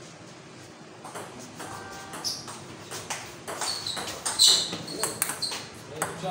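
Table tennis ball being hit back and forth in a doubles rally: irregular sharp clicks of ball on paddles and table, some with a short high ping, the loudest about four and a half seconds in.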